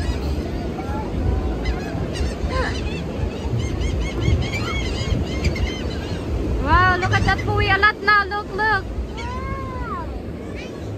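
Gulls calling overhead: scattered faint calls, then a quick loud run of short arched calls about two-thirds of the way through and one longer call near the end, over steady low wind and surf noise.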